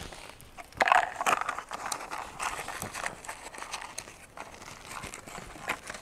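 Packaging rustling and crinkling as hands rummage in a cardboard parts box, loudest about a second in, with scattered light clicks of small parts being handled.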